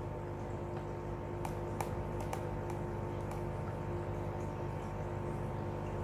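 A steady mechanical hum of room tone, with a few faint ticks about one and a half to two and a half seconds in.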